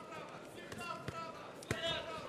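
Gloved strikes landing on a fighter with short, sharp thuds: a lighter one about a second in and a louder one near the end, a body shot. Faint shouted voices from the crowd and corners underneath.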